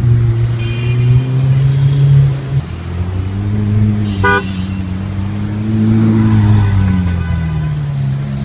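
Ferrari 458 Italia's V8 running at low revs as the car rolls slowly past, its note dropping a little about two and a half seconds in and swelling briefly near six seconds. A short car-horn toot sounds about four seconds in.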